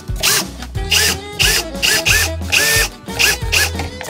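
A cordless drill-driver run in many short bursts, each a quick rising whine that levels off, as it drives the screws of a marine toilet pump's cover plate. Background music with a steady beat plays over it.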